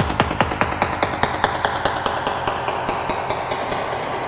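Trance music at a breakdown: the kick drum and bass drop out, leaving a fast, even run of percussive hits, about nine a second, under a sweep that falls in pitch.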